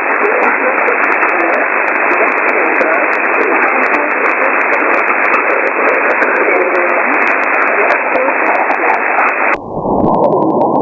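Shortwave receiver static: a steady hiss of band noise heard through a sideband filter, with faint crackle. Just before the end the hiss abruptly turns duller and narrower as the receiver's demodulation mode is switched.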